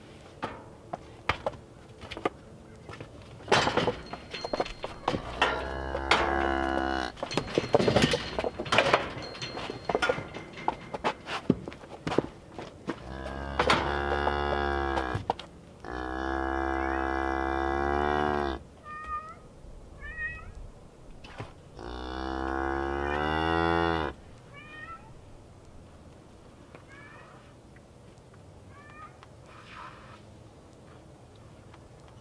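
Cattle mooing: four long, loud calls of about two to three seconds each, bending in pitch, through the middle stretch. Before them comes a run of knocks and clatter from the steel cattle chute, and short high chirps follow near the end.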